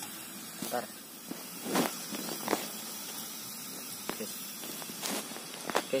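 Portable butane camp-stove burner hissing steadily at full gas under a pot of oil that is not yet hot. A short word and a few brief knocks break in.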